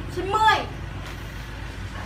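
A short spoken phrase in Thai, ending about two-thirds of a second in, followed by low, steady background noise.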